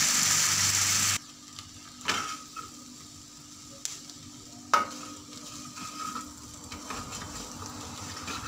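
Onions, tomato and green chillies sizzling loudly in hot oil in an iron kadai; about a second in the sound drops abruptly to a faint sizzle. A couple of sharp clicks follow, and a few light scraping clicks near the end as the mixture is stirred.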